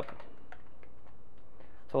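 Faint ticks and crinkles of scissors cutting open a sealed foil packet of pellet hops, over steady background hiss.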